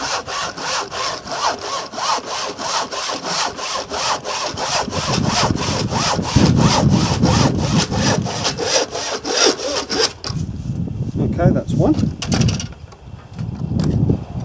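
Handsaw cutting through a wooden plank clamped to a workbench, in quick, even back-and-forth strokes of about three to four a second. The sawing stops about ten seconds in.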